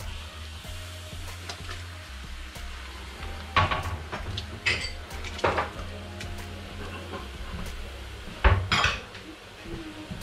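A glass bowl clinking against a stainless steel stockpot as mussels are tipped into the soup. There are a few sharp clinks through the middle, and the loudest comes near the end.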